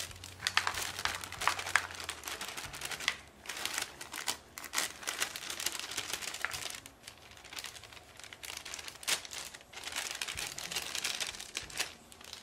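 Crinkling of a bag of dry brownie mix being handled and tipped out, the powder pouring into a mixing bowl, with irregular crackles throughout.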